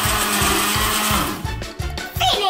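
Personal bottle blender running, pureeing watermelon chunks into juice, then switching off a little over a second in.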